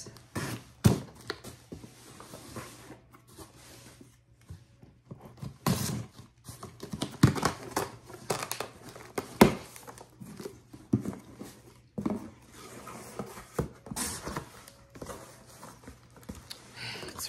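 Cardboard shipping box being opened by hand: irregular tearing, scraping and crinkling of tape and cardboard, with scattered sharp knocks.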